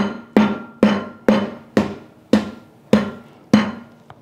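Meat tenderizer mallet pounding a thumb-sized piece of ginger on a wooden cutting board to crush it: about eight hard knocks roughly half a second apart, spacing out slightly, each with a short ringing tail from the board.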